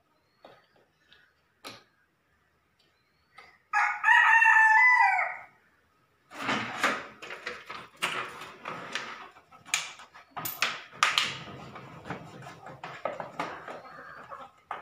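A rooster crows once, loudly, for about two seconds, about four seconds in. From about six seconds on come irregular clicks and knocks of hand tools and the cover being handled at a wall-mounted circuit-breaker distribution board.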